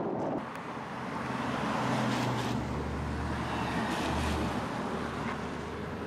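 Car driving on a mountain road: steady engine hum and road noise, with wind on the microphone. The low engine hum grows stronger about two and a half seconds in.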